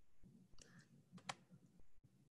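Near silence with faint room tone and a few faint clicks; the sharpest comes just past halfway.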